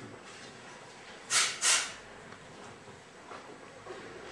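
A quiet pause with no music playing. A little over a second in, two short, loud hissing noises come close together, about a third of a second apart.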